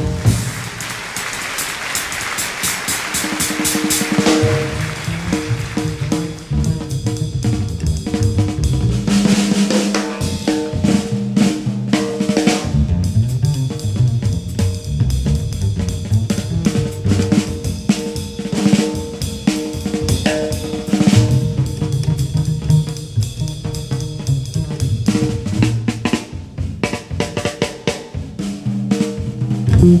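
Jazz drum solo on a full kit played with sticks. A cymbal crash washes out over the first few seconds, then busy snare and bass drum figures run on.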